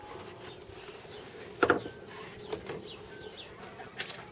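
Handling noise as fishing rods with reels are lifted and moved, with one short knock a little before halfway through. Faint high chirps sound near the end.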